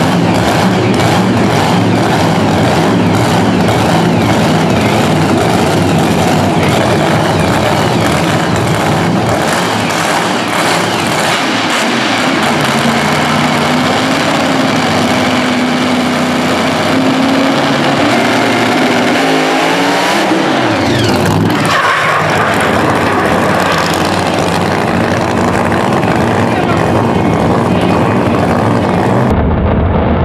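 Supercharged Pro Mod drag car engine running loudly, with a rev that rises and drops sharply about twenty seconds in.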